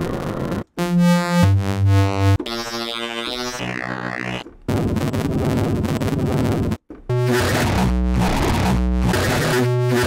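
Xfer Serum software synthesizer playing through a series of Power Toolz wavetables, an LFO sweeping the wavetable position: buzzy, growly tones whose timbre changes each time a new wavetable is selected, with two brief breaks. Near the end the tone pulses roughly once a second.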